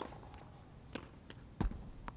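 Tennis ball struck in a rally on a hard court: a sharp racket crack at the start, another about a second later, then a louder thud near the end.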